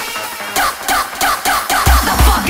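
Hardcore techno in a DJ mix: a break of fast repeating synth notes, each sliding down in pitch, then a heavy kick drum comes in just before the end, pounding about three times a second.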